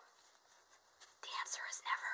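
A woman whispering a few words, starting a little after a second in, after a quiet first second.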